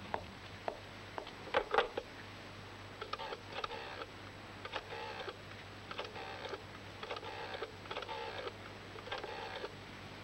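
Telephone being dialled: a few sharp clicks, then seven short bursts of rapid clicking about a second apart, one burst per digit, over a faint steady hum.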